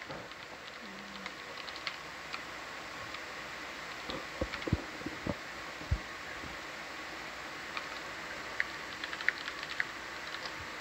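Computer keyboard typing, scattered light key clicks with a few louder strikes about four to six seconds in, over a steady hum of control-room equipment.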